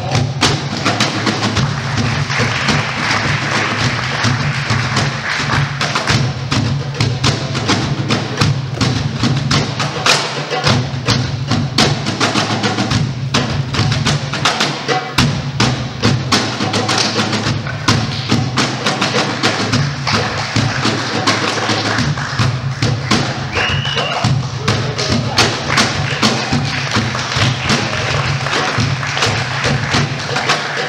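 Hand-percussion music with a quick, steady beat of sharp knocking strikes and deeper thuds.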